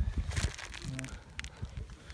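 Wind rumbling on a handheld phone's microphone outdoors, with a brief rustle of handling about half a second in and a few light clicks; a voice says a short 'No' about a second in.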